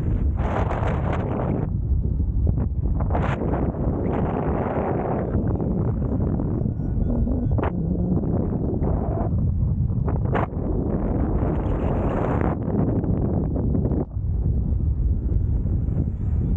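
Wind rushing over the microphone of a camera on a paraglider in flight. It is a steady low rumble that swells and fades in gusts, with a few brief sharp buffets.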